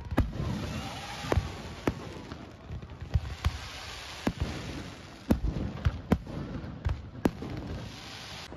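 Aerial fireworks going off: a string of sharp bangs, about ten in eight seconds and unevenly spaced, over a steady hiss of burning shells.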